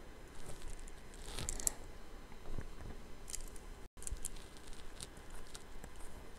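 Faint scattered taps and short scratches of a stylus on a tablet screen while drawing lines.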